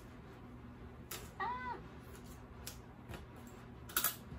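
A cat meows once, a short rising-and-falling call about a second and a half in, with a few faint clicks around it.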